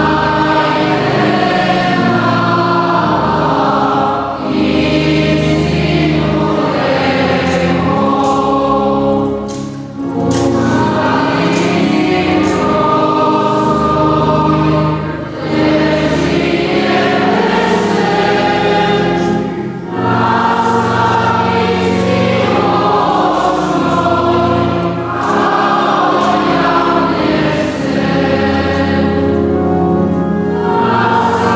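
Church choir singing a hymn in phrases of a few seconds each, with short breaks between them.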